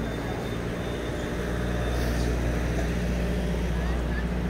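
A motor vehicle engine running close by, a steady low hum that grows slightly louder through the middle, over general street noise.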